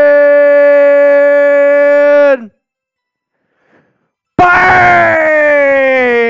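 A man's long, drawn-out shout held on one pitch, which stops about two and a half seconds in. After a two-second pause a second long shout starts and slowly slides down in pitch.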